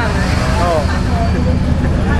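A vehicle engine idling close by as a steady low rumble, with a person's voice over it near the start.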